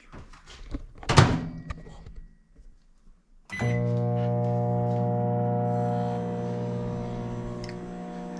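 A microwave oven's door shuts with a thunk about a second in; a short beep follows a few seconds in as the oven starts. It then runs with a steady hum to the end.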